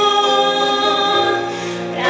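A woman singing a slow Christian song into a microphone over musical accompaniment, holding long sustained notes.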